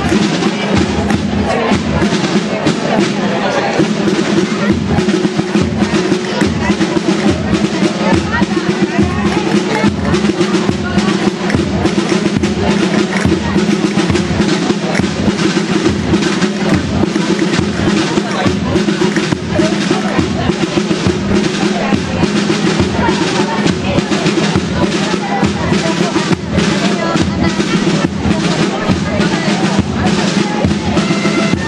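Live folk dance music: a drum beats a steady pulse of about two strokes a second under sustained melody notes.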